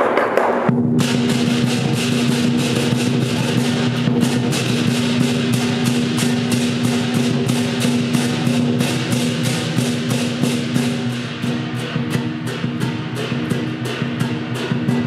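Lion dance percussion band of drum, cymbals and gong playing a fast, steady beat, the cymbal clashes repeating several times a second over the gong's ringing.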